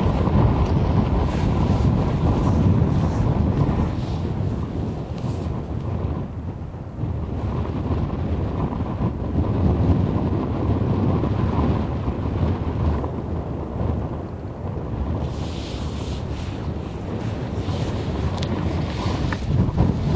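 Wind buffeting the microphone: a loud, low rumble that swells and eases in gusts.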